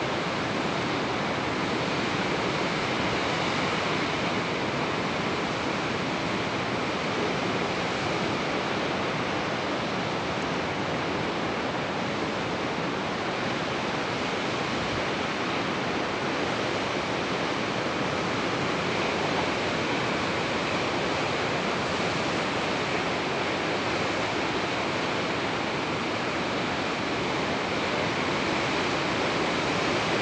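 Ocean surf, a steady, even rushing roar with no breaks or separate crashes.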